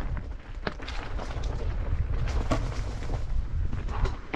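Mountain bike ridden down a rocky singletrack: a steady low rumble of wind buffeting the helmet-mounted microphone and tyres rolling over rock and dirt, broken by several sharp knocks and rattles as the bike hits rocks.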